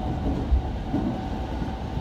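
Electric commuter train running between stations, heard from inside the carriage: a steady low rumble of wheels on rails with a faint steady hum, and a single thump about half a second in.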